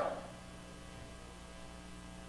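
Faint, steady electrical mains hum with light hiss from the audio system, heard in a pause between speech.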